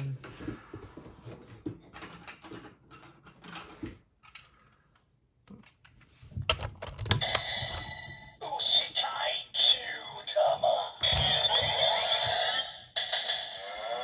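Plastic toy handling clicks. Then, from about six and a half seconds in, the Kyuranger toy mech's built-in speaker plays its electronic sound effects, music and voice callout for the loaded Kyutama orb. Near the end comes a cow-like moo.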